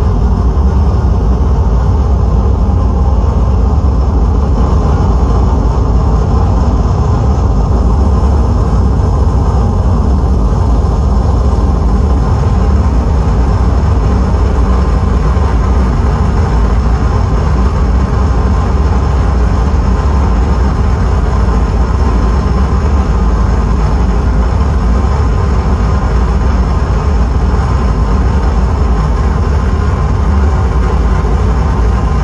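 Live harsh noise from effects pedals and a mixer: a loud, dense, continuous wall of distorted electronic noise, heaviest in the deep low end, holding steady without rhythm or pauses.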